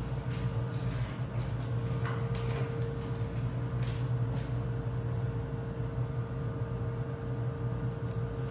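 Steady low hum of a kitchen with a gas stove burner lit under a pan of simmering cornstarch gravy, with a faint steady tone over it and a few faint ticks.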